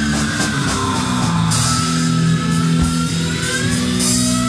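Rock band playing an instrumental passage: distorted electric guitar over a drum kit, no vocals, with a cymbal crash about one and a half seconds in.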